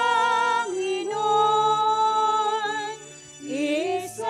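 A high voice singing a slow hymn during communion at a Catholic Mass, holding long notes with a slight waver. It pauses briefly about three seconds in, then slides up into the next note near the end.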